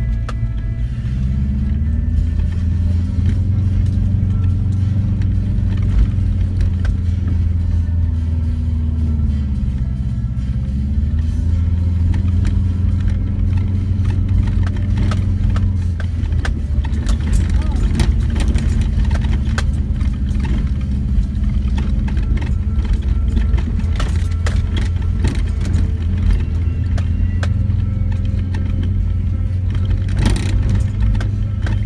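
A 2004 Subaru Forester's flat-four engine heard from inside the cabin, pulling up a dirt hill. Its pitch dips and rises twice, near the start and about ten seconds in. From about halfway on, rattles and knocks from the rough track sound over the steady engine drone.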